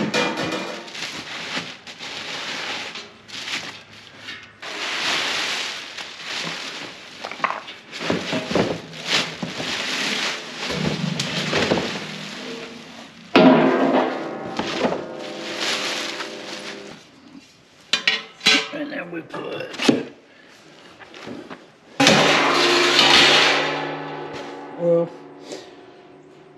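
Plastic wrapping crinkling and rustling as a stainless steel fire pit is unpacked from its cardboard box, with the steel parts clanking and ringing on, once about halfway and again near the end.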